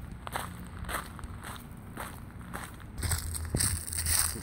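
Footsteps walking on a paved trail covered with dry fallen leaves, crunching about twice a second, with a louder steady rustle of leaves near the end.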